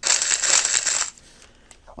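A 'delete' sound effect played on cue in a radio studio: a crackly, rattling burst lasting about a second that then stops.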